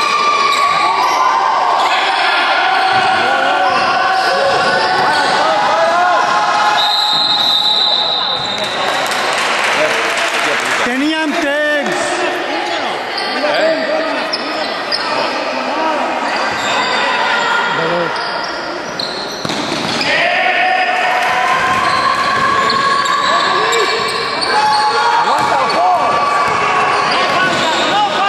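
Basketball game on an indoor court: the ball bouncing and players' feet on the floor, with shouting voices of players and spectators echoing through a large sports hall.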